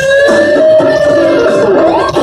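Live rock band with an electric guitar lead holding one long sustained note that bends slightly upward, then slides up near the end, over bass and drums.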